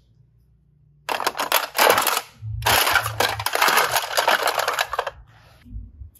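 Hard plastic toy capsules and containers clattering and rattling as they are handled, in two long runs of dense clicking.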